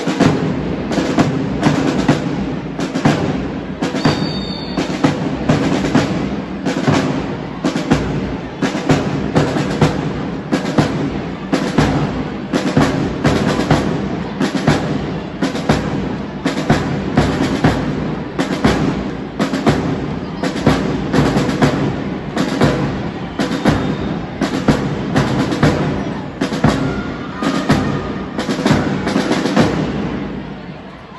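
Marching drums beating a steady cadence, about two strokes a second, to keep time for a marching drill.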